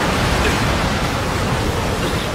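Anime sound effect of a wind blast: a loud, even rush of wind through ice and mist, with no pitch and no separate impacts.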